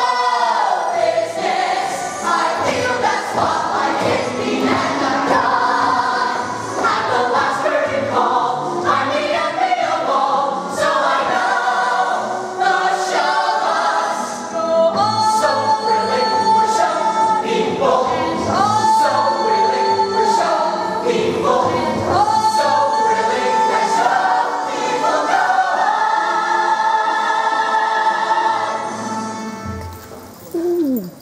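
Mixed ensemble of young men and women singing a Broadway show tune together with instrumental accompaniment. About halfway in the voices move to long held notes, and the number builds to a final sustained chord that cuts off at the very end.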